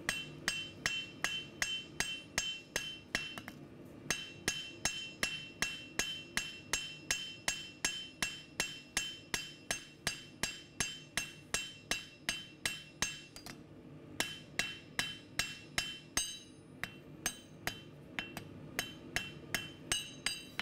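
A blacksmith's hand hammer strikes a red-hot knife blade on a steel anvil in a steady rhythm of about two to three blows a second, many blows leaving a bright ring. There are brief pauses about four seconds in and again near fourteen seconds. This is forging the blade's bevel.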